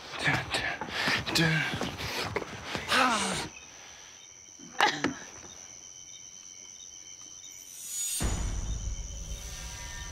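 A few seconds of voices and exclamations, then a lull in which crickets chirp with a steady high trill. A low music bed comes in about eight seconds in.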